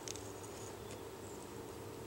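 Quiet background with a faint steady hum and no distinct events.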